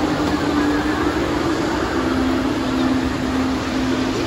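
Steady, loud ambience of an indoor water park pool: a wash of water and crowd noise under a constant low mechanical hum.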